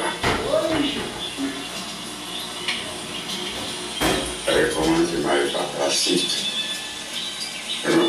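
Indistinct voices with some music underneath, coming from a television's speaker.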